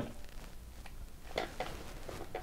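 Quiet room tone with a low hum and a few faint, short clicks a little past the middle.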